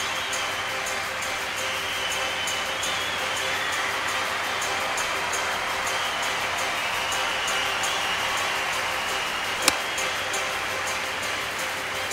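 Outdoor ambience with a steady hiss and a faint high chirp repeating about three times a second, broken near the end by one sharp click of an iron striking a golf ball.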